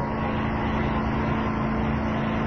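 A steady background hum with a constant low tone, unchanging throughout.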